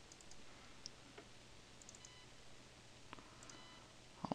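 Near silence: a few faint, scattered computer mouse clicks over a low steady hum.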